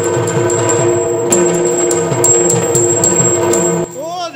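Yakshagana talamaddale accompaniment without voice: maddale drum strokes under the bhagavata's tala (small hand cymbals), which strike about four times a second and ring, over a steady drone. The music stops abruptly just before the end.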